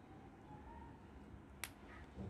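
Near silence with a single sharp click of small plastic toy parts being handled, about one and a half seconds in.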